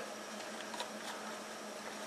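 Steady hiss of a Coleman two-burner propane camp stove, both burners running at low heat.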